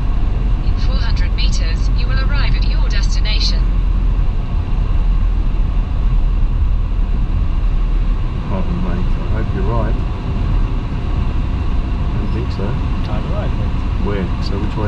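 Low, steady road and engine rumble heard inside the cabin of a moving car. The rumble eases a little about eight seconds in. Brief indistinct talking comes about a second in and again later.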